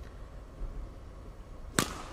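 A badminton racket strikes a shuttlecock once near the end: a single sharp crack over a low, steady arena background.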